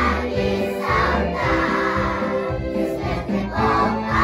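A choir of preschool children singing together in unison over instrumental accompaniment with a steady low beat.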